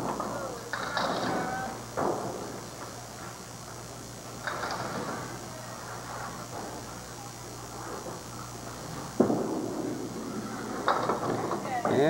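Candlepin bowling alley sound with background chatter and scattered knocks; about nine seconds in comes a sudden loud crash that trails off, a candlepin ball hitting the pins for a strike.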